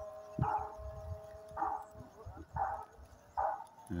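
Short animal calls repeating about once a second, moderately faint, with a faint steady tone under the first half.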